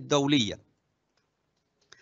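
Speech stops about a quarter of the way in, then near silence, broken near the end by a single sharp computer-mouse click advancing the slide.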